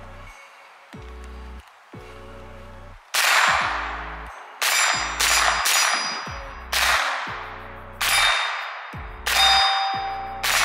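Background music with a steady bass beat, then, from about three seconds in, seven single shots from an MP5-style .22 LR rifle, roughly a second apart, each followed by the clang of a struck steel target ringing out.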